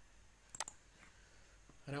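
Computer mouse button clicked, a quick pair of faint clicks about half a second in.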